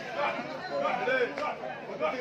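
People talking, several voices overlapping.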